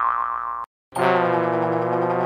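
Comic 'boing' sound effects added in editing: a springy tone that has just glided up holds steady and cuts off abruptly. After a short silent gap, a steady buzzy held tone begins about a second in.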